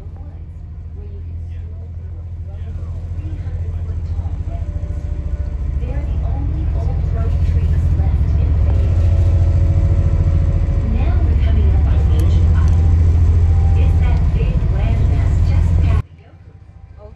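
Tour boat's engines rumbling low and steady, heard inside the passenger cabin, growing louder through the first half and then holding.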